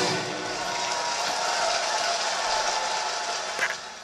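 Concert audience applauding and cheering, with a steady wash of clapping that fades out near the end.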